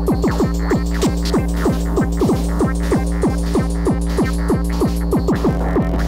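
Hardtek track played from a 12-inch vinyl record: a fast, regular run of short hits that drop in pitch, over a steady low droning bass.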